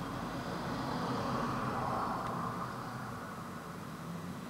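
Steady background rumble and hiss with no clear event, swelling for a couple of seconds and then easing.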